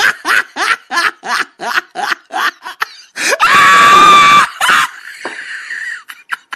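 A person laughing in quick bursts, about four a second, then a loud, sustained shriek about three and a half seconds in that lasts about a second.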